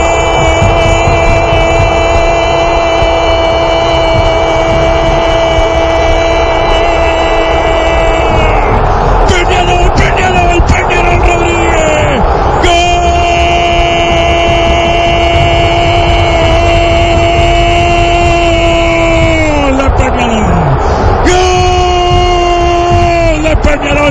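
Radio football commentator's long drawn-out goal shout, a single held note of about eight seconds, then another of about seven and a shorter third, each sagging in pitch as his breath runs out. A stadium crowd roars underneath.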